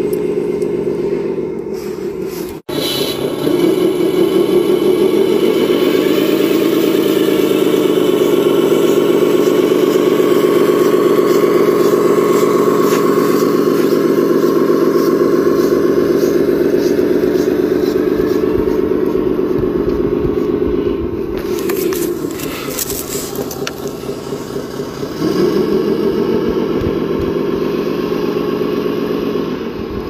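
Engine sound from an RC model's sound module, a simulated diesel run through a small speaker, running steadily with little deep bass. It cuts out for an instant about two and a half seconds in, rises and falls in pitch briefly soon after, and runs quieter for a few seconds past the twenty-second mark before coming back up.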